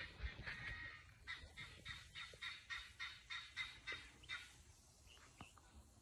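A bird calling faintly in a quick, even series of short notes, about three or four a second, which stops a little over four seconds in.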